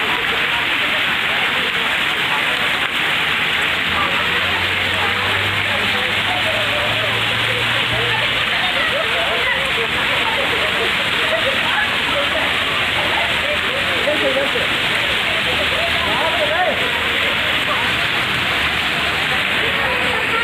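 Fountain water falling steadily from the rims of its tiered bowls and from elephant-trunk spouts, splashing into the basin pool below in an unbroken rush.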